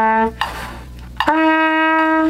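A trumpet's held note ends and the player takes a quick breath. A new, higher note is then tongued about a second in and held, one slow step of a beginner's fingering exercise.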